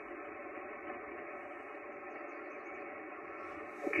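Steady static hiss from the Yaesu FT-991 HF transceiver's speaker, with no high treble, while the radio is on receive listening for a reply to a CQ call.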